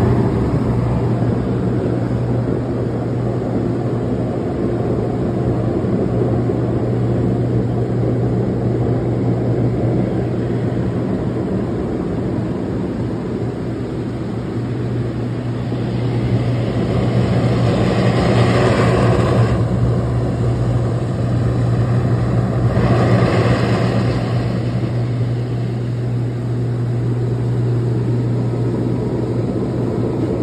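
HydroMassage water-jet bed running at pressure 7, speed 3: a steady pump hum with water jets swishing under the mattress. Twice, about halfway through and again a few seconds later, the rushing of the jets grows louder for a few seconds.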